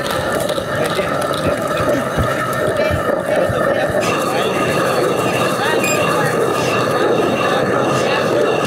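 Hand-turned stone grain mill (chakki) grinding with a steady rumble, mixed with shouting voices.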